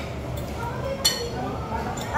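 Restaurant room sound: a steady low hum and faint background chatter, with one sharp clink of tableware about a second in.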